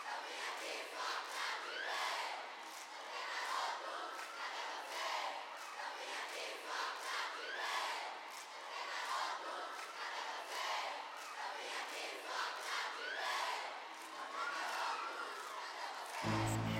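Large concert crowd cheering, with many high voices screaming over one another; the noise swells and eases in waves.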